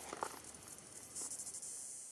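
An insect calling in the bush: a high, finely pulsed buzzing trill that starts up about a second in.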